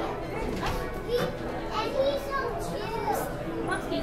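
Indistinct chatter of several voices, children's among them, with no single speaker clear.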